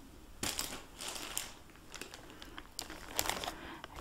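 Clear plastic packaging bag crinkling as hands handle it, with scattered light clicks and taps, busier after about three seconds.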